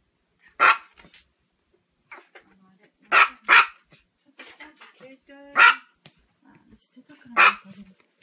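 A small chihuahua barking: five sharp, high yaps, one about a second in, a quick pair about three seconds in, another at about six seconds and one near the end.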